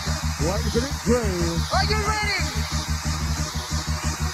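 A makina DJ mix, fast electronic dance music with a steady kick-drum beat. In the first half, a voice calls out over it in short rising and falling shouts.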